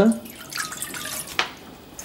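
Water poured from a plastic measuring jug into a stainless steel saucepan, a splashing stream that stops about a second and a half in.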